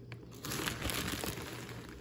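Clear plastic food bag crinkling, starting about half a second in.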